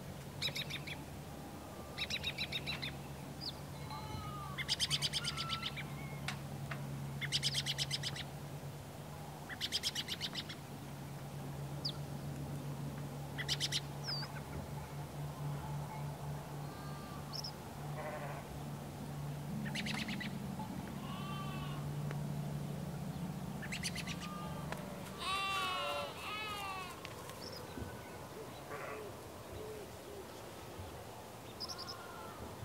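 Farmyard ambience: birds calling and chirping in repeated short bursts, with farm-animal calls in the second half, over a steady low hum.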